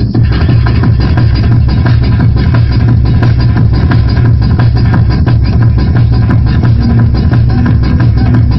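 Loud tekno (freetekno) dance music mixed from vinyl turntables, with a fast, steady kick-drum beat and heavy bass.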